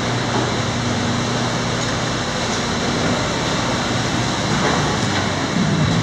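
2008 Ford F-150's 5.4-litre V8 idling steadily, heard from behind the truck, with a steady low hum over a rushing hiss. It gets a little louder near the end.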